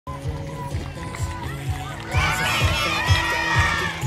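Music with a steady bass beat, with a large crowd of schoolchildren shouting and cheering that swells louder about two seconds in.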